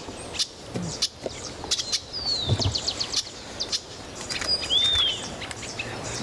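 Several wild birds chirping and calling: a quick series of short high chirps, a falling whistled note about two seconds in, and an arched whistle near the end.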